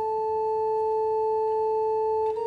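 Pipe organ holding one steady, pure note at the start of an instrumental piece.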